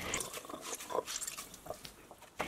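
Hands squeezing water out of a ball of boiled Korean thistle greens: faint wet squelches, with water dripping into a glass bowl.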